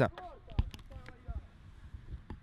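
Faint shouting of players on the pitch, with a few thuds of the football being kicked.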